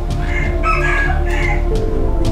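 A rooster crowing once, a drawn-out broken call, over background music.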